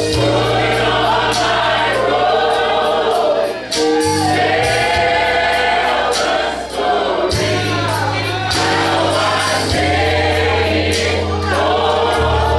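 Church choir singing a gospel song, many voices together, with a band behind them: a drum kit keeping a steady beat under a low bass line.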